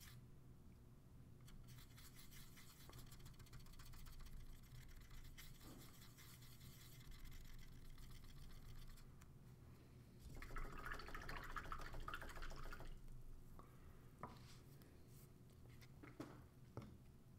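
Faint, rapid scratchy brushing of a paintbrush working red paint onto a plastic miniature. It grows louder for a couple of seconds past the middle.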